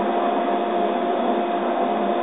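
Laser cutter running while cutting: a steady machine hum with two steady tones over an even hiss.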